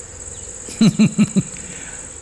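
Crickets chirping in a steady, high, pulsing trill. About a second in, a man gives a short laugh of four quick syllables.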